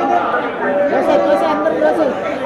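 People talking, with several voices overlapping in chatter.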